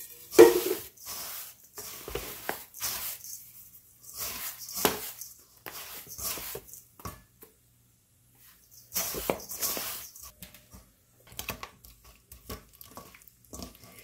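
Dry panko breading poured from a canister into a stainless steel mixing bowl, then a seasoning shaker shaken over it: irregular rustling, pattering and light metallic knocks, with a short pause a little over halfway through.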